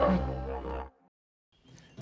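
The tail of a TV show's theme music: a last held chord fades and cuts off just under a second in, followed by near silence, with faint background sound returning shortly before the end.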